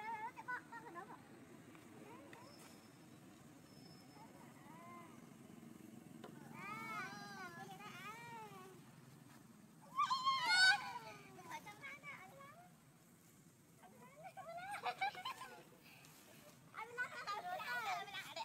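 Macaques calling in several bouts of high, arching calls, each rising and falling in pitch, a few to the second. The loudest bout comes about ten seconds in, over a faint steady low hum.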